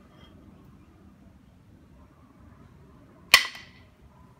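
A single sharp knock, late on, of a knapping billet striking the edge of a flat stone biface preform, with a brief ringing tail. The blow fails to detach a flake.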